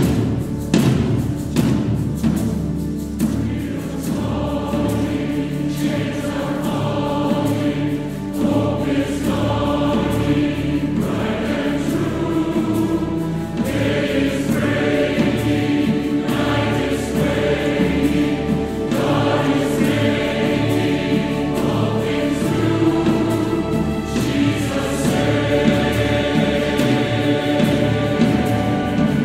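Massed church choir singing a hymn with a full symphony orchestra of strings, harp and timpani behind it, the singing and playing loud and sustained.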